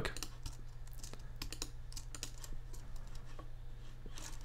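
Faint, scattered clicks of a computer mouse and keyboard, spaced irregularly, over a low steady hum.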